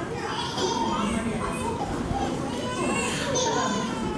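Children chattering and calling out, with high-pitched voices peaking about half a second in and again about three seconds in.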